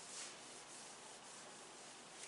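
Faint rubbing of a cloth wiping marker off a whiteboard, with a slightly louder stroke near the start.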